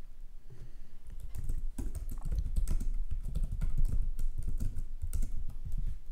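Typing on a computer keyboard: a run of quick keystrokes, busiest in the middle.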